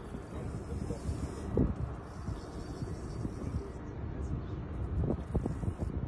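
Wind buffeting the phone's microphone: a steady rumbling hiss with no clear tones.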